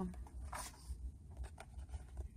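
A short rustle about half a second in and a few faint light clicks over a steady low hum: handling noise.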